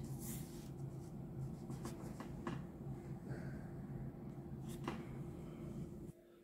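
Fingers handling small plastic model kit parts over a paper sheet: faint rustling and a few light clicks, over a low steady hum.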